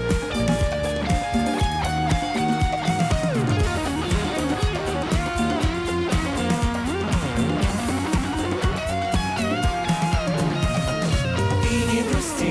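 Live band playing an instrumental passage: guitars strumming over bass and drums with a steady beat, and a lead melody line that bends in pitch.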